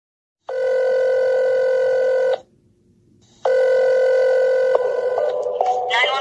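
Telephone tones: a steady buzzy tone sounds for about two seconds, stops for a second, then returns and breaks into a run of short tones stepping up and down in pitch, like a call going through before an emergency operator answers.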